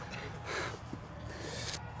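Low, steady outdoor background noise at cricket practice nets, with faint indistinct voices.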